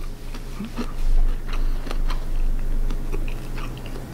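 Mouth chewing a bite of rice topped with chili crisp, with irregular small crunches from the fried crispy bits.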